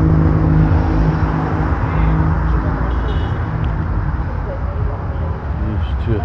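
Engine and road noise from a vehicle moving along a city street. A steady engine hum fades after the first second or two, leaving a low rumble of road and wind.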